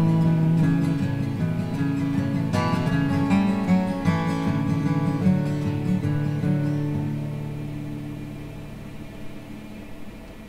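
Solo acoustic guitar playing the closing phrase of a slow song: a few plucked notes, then a final chord left ringing and fading away over the last few seconds.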